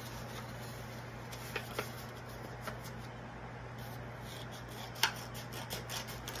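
Quiet room tone with a steady low hum, and a few soft clicks and taps of construction paper being handled on a table. The clearest tap comes about five seconds in.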